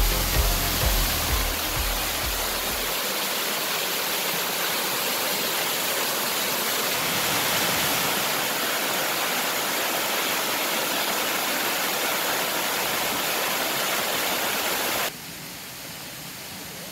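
Small waterfall cascading over rocks into a shallow pool: a steady rush of falling and splashing water. Music fades out under it in the first few seconds, and about a second before the end the rush drops abruptly to a fainter hiss.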